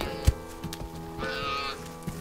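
A single dull thump about a quarter second in, then a brief high-pitched cry about a second later, over the steady sustained tones of the film's string score.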